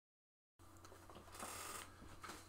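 Silence for the first half second, then faint room tone with a low steady hum, and a brief soft rustle about a second and a half in.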